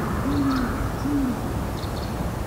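Great horned owl hooting: a longer deep hoot followed by a shorter one, part of its hoot series.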